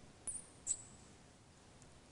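Two faint clicks about half a second apart, each with a short high squeak: a tablet pen tapping on the screen.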